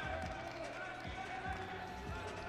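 A basketball bouncing on a hardwood court, a couple of short thumps about a second in and again shortly after, over a steady arena murmur with a faint held tone.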